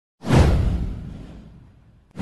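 A whoosh sound effect with a deep rumble under it, from an animated news intro. It starts suddenly just after the beginning, falls in pitch and dies away over about a second and a half.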